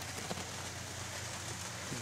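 Steady background noise in a pause between words: an even hiss with a faint low hum, with no distinct events.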